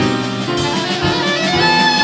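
Live jazz trio playing: a soprano saxophone carries the melody over piano and a drum kit with cymbals, and the sax holds a long note near the end.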